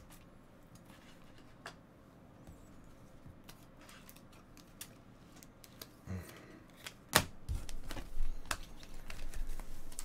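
Quiet handling sounds with a few faint clicks, then about seven seconds in a sharp tap and louder rustling and knocking as a hand takes hold of a sealed foil trading-card pack on a rubber table mat.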